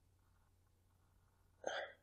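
Near silence, broken once near the end by a short vocal sound from a person, lasting about a third of a second.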